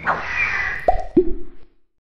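Animated logo sound effects: a swishing whoosh, then two quick cartoon pops that drop in pitch about a second in, the second lower than the first.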